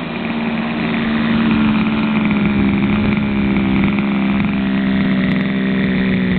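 The two-stroke petrol engine of an MCD RR Evo 3 1/5-scale RC buggy running at a steady engine speed, its pitch sagging slightly over the few seconds.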